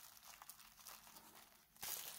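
Bubble wrap crinkling faintly as it is handled and pulled back off a display panel, with a louder rustle near the end.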